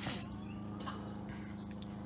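A steady low hum with even overtones, with a short breath-like rush of noise at the start.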